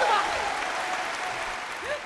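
Studio audience applauding, the clapping dying away over about two seconds.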